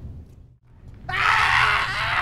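Chewbacca the Wookiee roaring, a film creature vocal effect: one long, loud roar wavering in pitch that starts about a second in, just after the orchestral score dies away.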